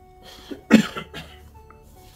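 A man coughs once, short and sharp, about a second in, over quiet background music of held notes.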